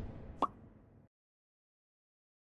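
Tail of a logo sound effect on an animated closing card: a fading swell with one short, sharp plop about half a second in.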